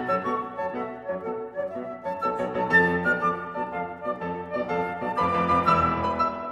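A concert flute and a grand piano playing classical music together, a quick-moving flute line of short notes over a piano accompaniment.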